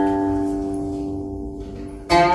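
Guqin (seven-string Chinese zither) notes, plucked just before, ringing on at a steady pitch and slowly fading.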